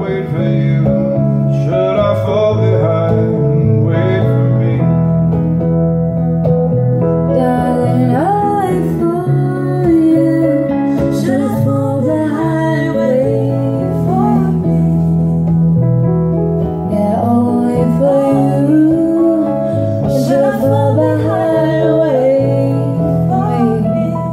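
Live song performance: a woman singing into a microphone over instrumental accompaniment with guitar and steady low bass notes.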